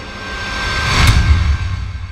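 Cinematic logo-sting sound effect: a rising whoosh swells to a sharp hit about a second in, followed by a deep rumbling boom.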